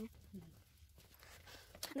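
Quiet pause between a man's speech: low indoor room tone, with a brief faint voice sound about a third of a second in and speech resuming at the very end.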